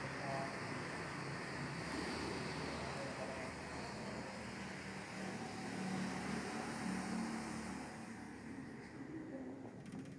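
Steady hiss of room and air noise with faint, indistinct voices in the background, thinning out near the end.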